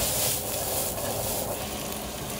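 Noodles sizzling in a hot frying pan on a gas burner as a sauce is poured over them: a steady sizzle, a little louder at the start.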